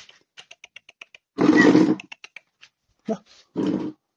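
A Tibetan mastiff giving one loud, deep, rough roar about a second and a half in, with a lion-like sound. It gives two shorter roaring barks near the end. A quick run of small ticks comes before the first roar.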